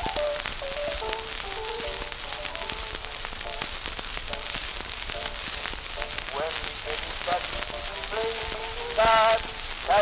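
Early acoustic Berliner gramophone disc recording from 1898: a melodic passage between sung lines, thin and narrow in range, under heavy surface hiss and crackle, with the singer's voice coming back in near the end.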